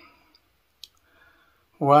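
A man's voice, mostly paused: two short mouth clicks and a soft breath in the gap, then his speech resumes loudly near the end.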